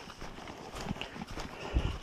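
A hiker's footsteps on a dirt forest trail, with gear and clothing rustling, and a heavier low thump near the end.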